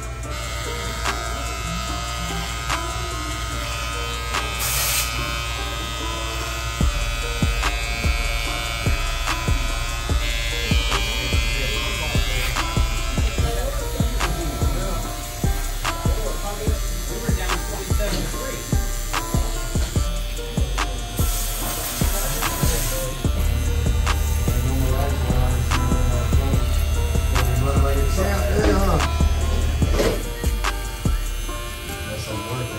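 Cordless electric trimmer buzzing as it cuts along the sideburn and beard line, with background music playing throughout.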